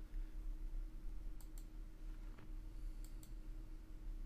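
Computer mouse clicking twice, each a quick double click of press and release, over a faint steady electrical hum.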